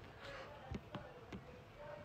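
Quiet room with a handful of soft, irregular taps and clicks, about five in two seconds: handling noise of the phone that is filming, as fingers tap and scroll its screen.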